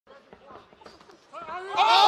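Faint voices, then about one and a half seconds in, loud excited shouting from several voices at once, with long drawn-out, gliding cries, as a punch lands.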